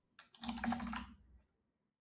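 Typing on a computer keyboard: a short run of keystrokes in the first second or so.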